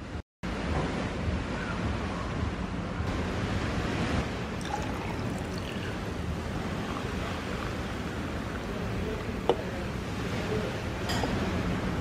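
Cola poured from a can over ice in a glass, fizzing with a steady crackling hiss, with a faint tick or clink now and then.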